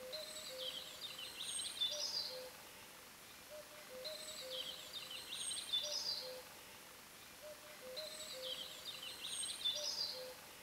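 Faint birdsong: a bright chirping phrase with a few short lower notes beneath it, repeating as a loop about every four seconds.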